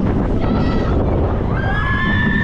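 Wind rushing over the microphone on a steel roller coaster's front seat, with riders screaming: a short scream about half a second in, then a longer held scream starting near the end as the train drops.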